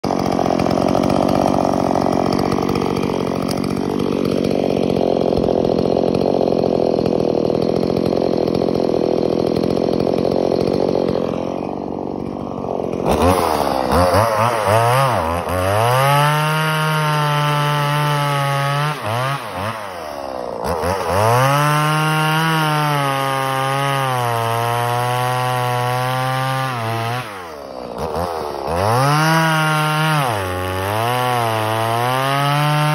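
Stihl MS170 two-stroke chainsaw, fitted with an aftermarket HIPA carburetor, cutting through a dead fir log. The throttle is repeatedly opened to a high steady pitch for several seconds and then drops back briefly, several times in the second half.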